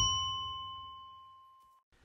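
A bell-like ding sound effect of the kind added to subscribe-button animations, ringing with a clear high tone and fading smoothly away, gone about a second and a half in.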